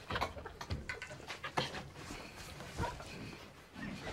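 A man's stifled, breathy whimpers and short gasps of pain, after being struck in the groin by a pool ball.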